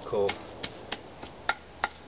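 Several sharp, irregular clicks and crackles, about five in two seconds, as a stick is pressed and worked into a charred tinder bundle on twig-strewn ground.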